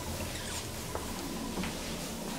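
Steady low hum of a 1960s KONE traction elevator car in its shaft, with faint squeaks and a couple of light clicks.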